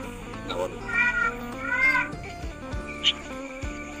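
Background music with steady sustained tones, over which come two short, high-pitched, arching calls about a second apart.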